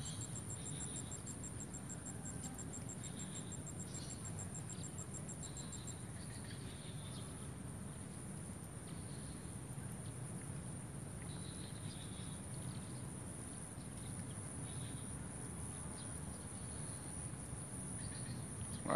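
Crickets and other insects calling at the swamp's edge: one steady high trill runs throughout. A second rapid, evenly pulsed chirping just below it stops about six seconds in, and faint short chirps come and go.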